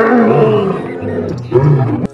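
Male lion roaring: a long, loud roar, then a second, shorter roar about a second and a half in.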